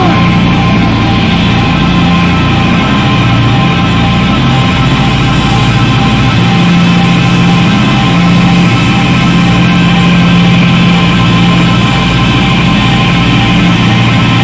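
A loud live heavy rock band playing electric guitar, bass guitar and drums. The low notes are held long, with a change of note about halfway through.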